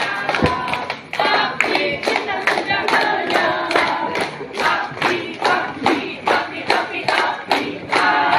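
A group of people singing together with steady rhythmic hand-clapping, about two claps a second.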